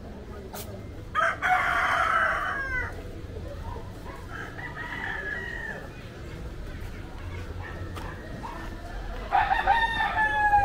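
Rooster crowing: a long crow about a second in, a shorter call around the middle, and another loud crow near the end, each trailing off in falling pitch.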